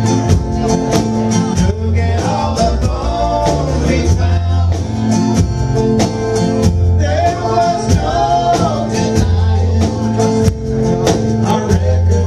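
A live country-rock band playing: acoustic and electric guitars, fiddle and drums keeping a steady beat, with a man singing over them.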